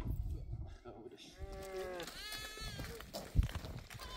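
A lamb bleating twice, about halfway through: first a lower call, then a higher, wavering one. A single sharp thump comes near the end.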